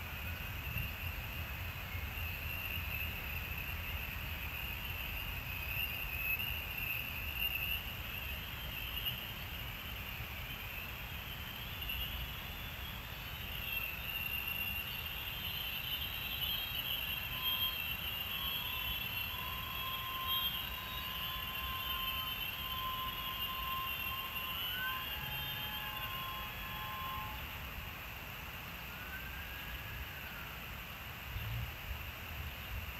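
Freight train passing at a distance: a steady low rumble with high squealing tones over it. In the second half a steady whine joins in, and three short whines rise and fall near the end.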